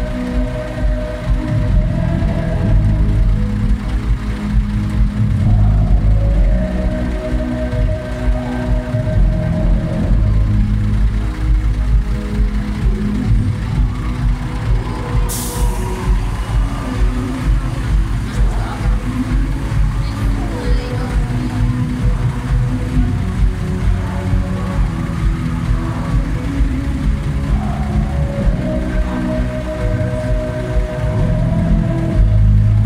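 Live band music at a concert, picked up by a phone microphone: a song with a steady beat and heavy, boomy bass.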